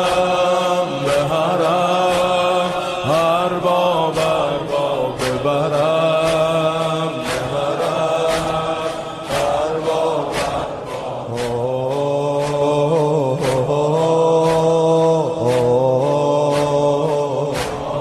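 Voices chanting "Hussain" over and over to a gliding melody, a Shia devotional chant, with a steady beat of sharp strikes.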